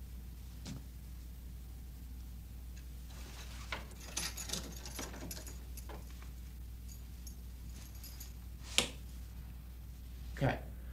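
Quiet metallic clicks and jingling, with one sharper click near the end, over a steady low hum in the location sound.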